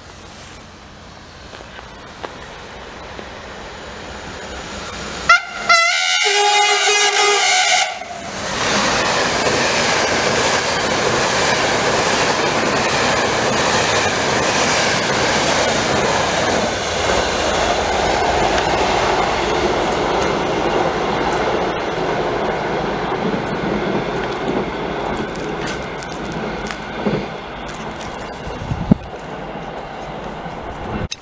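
Passenger train approaching at speed, growing louder, then a horn blast of about two and a half seconds about five seconds in. The coaches then pass close by with a loud rush and clatter of wheels over the rail joints, slowly fading toward the end.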